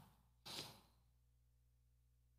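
A man's single short breath close to a handheld microphone, about half a second in, then near silence.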